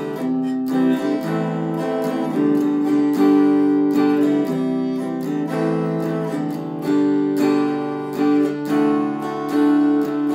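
Kit-built Les Paul-style electric guitar played through a small practice amp: a run of strummed chords, with the chords changing every second or so.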